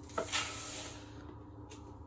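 Dry breadcrumbs pouring from a small cup into a plastic mixing bowl: a short, soft hiss that fades within about a second, then a faint tap.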